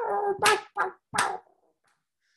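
A man imitating chicken clucks with his voice in a rhythmic beatbox pattern: about four short, punchy vocal bursts, then it stops about a second and a half in.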